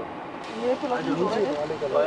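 People talking, several voices overlapping, starting about half a second in.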